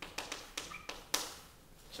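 Chalk tapping and clicking against a chalkboard while writing labels and arrows: about seven sharp taps in quick succession over the first second, the loudest just past a second in.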